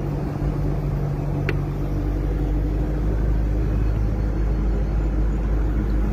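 Cabin noise of a moving Toyota car: a steady low engine and road rumble with an even hum. A single short tick about a second and a half in.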